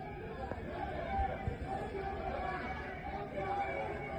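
Faint, distant voices and chatter from people outdoors, heard in the original audio of a phone-filmed clip, over a low rumble.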